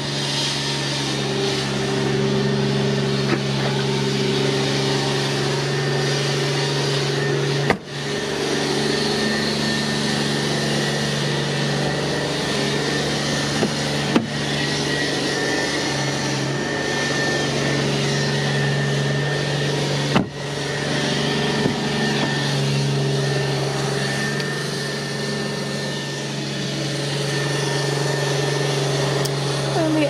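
A steady machine hum with a rushing noise over it, even in level throughout, broken by two brief dropouts about 8 and 20 seconds in and a single click near the middle.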